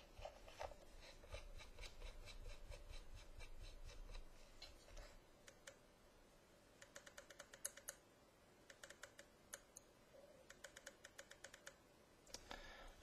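Very faint scratching and small clicks as a stainless steel atomizer is screwed onto the threaded connector of a Pioneer4You IPV3 box mod, then quick runs of light clicks in the second half.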